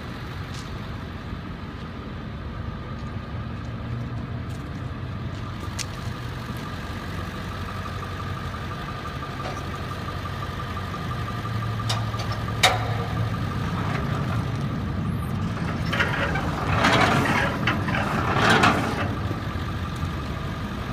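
Jet-A refueler truck's engine idling steadily. One sharp click comes about two-thirds of the way through. Near the end there are a few seconds of scraping and crunching as the fuel hose is pulled out across the gravel.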